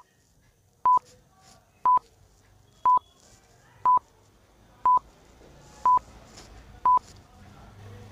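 Countdown timer beeps: short, identical high beeps, one each second, stopping about seven seconds in.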